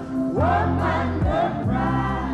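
Live reggae band playing, with a male lead singer's voice gliding over a steady bass line.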